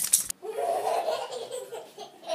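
A person laughing, starting about a third of a second in, after a brief high rattle that cuts off at the start.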